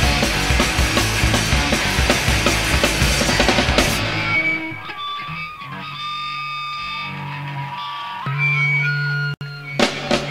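Punk rock band playing loudly with drums and distorted electric guitar. About four seconds in the song ends and held guitar and bass notes ring on, cut by a sudden brief dropout near the end just before the next song starts.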